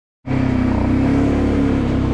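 ATV engine running steadily.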